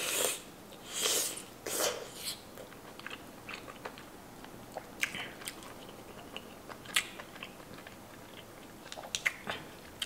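Close-up mouth sounds of a person eating a green-lipped mussel from a Cajun seafood boil: three louder wet mouthfuls in the first couple of seconds, then quieter chewing with small scattered clicks.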